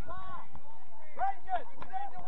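Distant, indistinct calls and shouts of players' voices across a soccer pitch, several short cries, the loudest a little after a second in.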